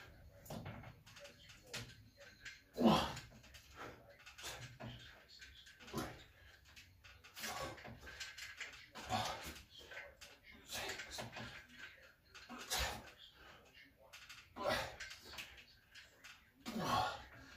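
A man breathing hard through a set of weighted dips, with a forceful exhale or strained grunt on each rep, coming about every one and a half to two seconds.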